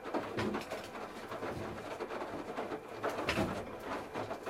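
Candy RapidO front-loading washing machine with its drum turning wet laundry, water sloshing and clothes flopping over in irregular surges. The loudest surge comes about three seconds in.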